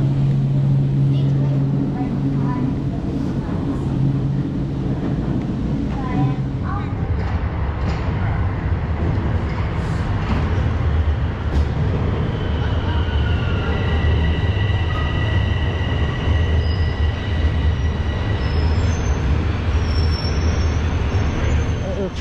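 A steady low hum for the first six seconds, then a subway train rumbling into the station. From about twelve seconds in, steady high-pitched whines sound over the rumble for several seconds.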